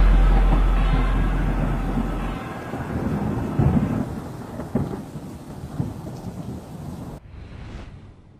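Thunder sound effect: a deep rumble that dies away after about two seconds, then a hiss with scattered crackles like rain, fading out by the end.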